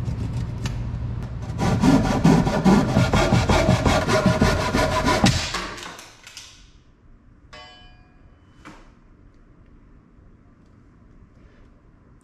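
Ryoba Japanese pull saw crosscutting the end of a thick laminated wooden slab, in fast, steady strokes that grow louder about two seconds in and stop about six seconds in as the cut is finished. A brief ringing tone follows, then only faint room sound.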